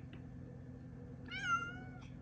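A tabby-and-white domestic cat gives a single short meow a little past halfway through, its pitch rising briefly and then settling slightly lower.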